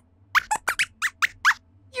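A robot lab-rat puppet's squeaky voice: a quick run of about eight short, high squeaks, chattering as if talking.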